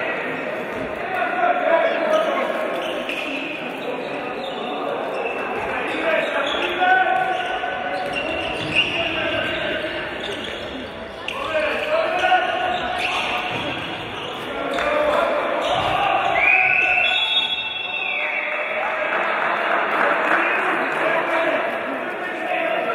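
Handball bouncing and being played on a wooden sports-hall floor, with voices calling out and echoing in the hall. About three quarters of the way through a single long, high tone sounds for about a second and a half.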